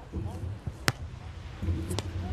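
A beach volleyball being served: one sharp slap of the hand striking the ball a little under a second in, with a fainter smack near the end and voices in the background.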